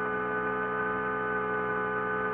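A steady held chord of several sustained tones, a drone in the documentary's background score, holding without change.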